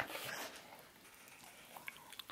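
Faint licking and mouth sounds from a dog right at the microphone, with a few small clicks near the end.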